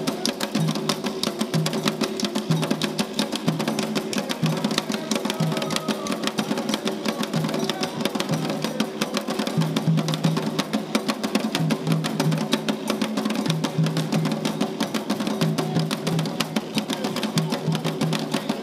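Afro-Brazilian terreiro drumming on atabaques, tall wooden hand drums, played in a fast, continuous rhythm of many strokes a second.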